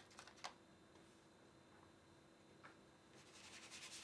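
Quiet, with a few light clicks of art materials being picked up on a table, then from about three seconds in, rapid scratchy strokes of a drawing medium on paper, growing louder.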